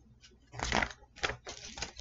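Paper rustling as a picture book's page is turned: a crackly burst about half a second in, followed by a few shorter crinkles.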